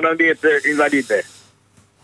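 A voice speaking for about a second, with a faint high hiss over it, then a brief pause.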